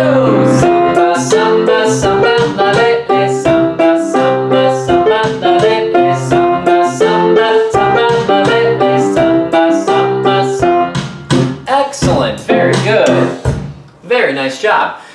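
Grand piano playing an upbeat samba accompaniment of rhythmic chords on a steady beat, thinning out about three seconds before the end and stopping.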